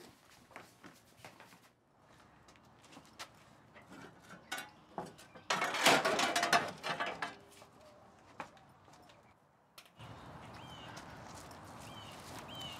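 Clattering and knocking as things are shifted about in a cluttered wooden shed, loudest for about two seconds in the middle, after scattered small clicks. From about ten seconds in, a steady outdoor background hiss with a few faint chirps.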